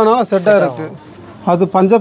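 Speech only: a person talking in two short phrases with a brief pause between them.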